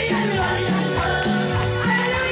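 Congregation singing a worship chorus together, many voices over band accompaniment with a stepping bass line and a steady percussion rhythm.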